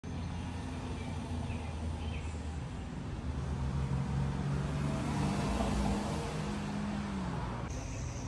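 Road traffic: a car passing by, its engine hum and tyre noise swelling to a peak about halfway through and then fading.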